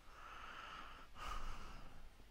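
A person breathing close to the microphone, two breaths, the second starting about a second in and a little louder.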